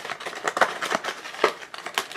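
Small cardboard blind box being opened by hand: the end flap is pulled open and the contents slide against the card, giving a few short scrapes and clicks with papery rustling between them.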